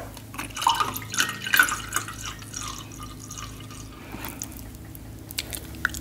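Close-miked wet mouth sounds after a sip of water: swallowing and lip smacks with dripping-like clicks through the first couple of seconds, then a few soft clicks near the end.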